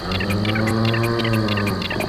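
Insects chirping in a fast, even pulse, about seven chirps a second, under one long, low pitched moan.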